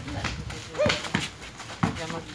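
A basketball bouncing sharply on a concrete court, three hard knocks in under two seconds, with a short shout with the first one.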